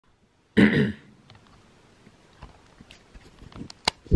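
A person coughs once, briefly, about half a second in. Faint scattered clicks follow, and a sharp click comes just before the end.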